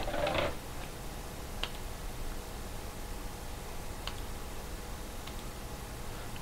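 Quiet room noise with a faint steady hum, and two faint single clicks, about a second and a half in and about four seconds in, from a computer mouse.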